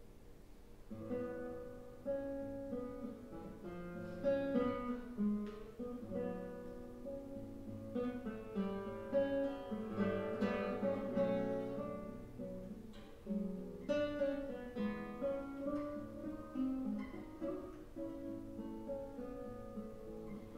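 Solo nylon-string classical guitar played fingerstyle, starting about a second in: a run of plucked notes and chords.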